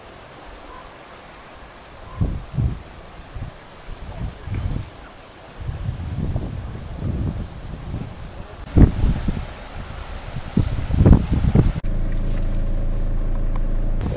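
Wind buffeting the camera microphone in irregular gusts of low rumble. About two seconds before the end it gives way suddenly to a steady low hum.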